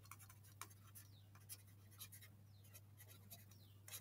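Faint scratching of a stylus writing on a tablet surface, a run of short pen strokes, over a steady low electrical hum.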